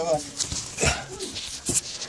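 Handling noise from a camera being passed hand to hand in a narrow cave crawl: a few sharp knocks and scrapes against rock, with short whimper-like strained vocal sounds in between.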